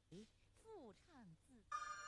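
Near silence with four or five faint tones, each gliding downward in pitch. Steady background music comes in near the end.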